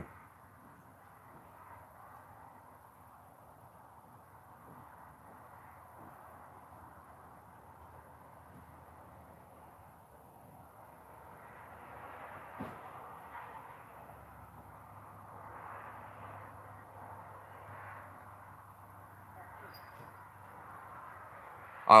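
Faint outdoor background noise, a low steady haze that swells a little in the second half, with one brief soft knock a little past the middle.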